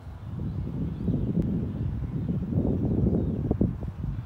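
Wind buffeting the microphone: an unsteady low rumble that swells up a moment in and keeps gusting, with a few faint clicks near the end.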